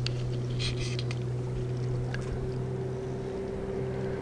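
A boat's motor running with a steady, even low hum. A few short, faint high ticks sound about a second in.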